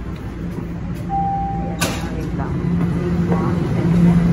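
Toronto subway train running as it slows into the station, a steady low rumble and motor hum. A short high tone sounds about a second in, followed by a sharp click.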